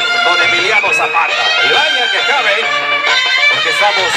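Wind band playing the music for a chinelos dance (brinco de los chinelos), held melody notes over a pulsing bass.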